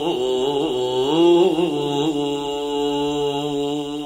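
A male voice sings the closing phrase of a Turkish Sufi hymn (ilahi/kaside) in a chant-like style, with melismatic turns of pitch in the first two seconds. It then settles into a long held note over a steady low drone.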